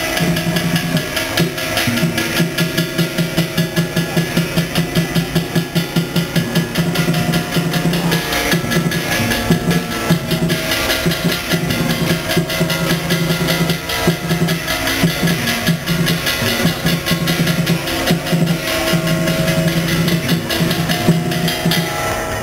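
Chinese ritual music led by drums, beating fast and evenly, with a steady held tone running over the beat.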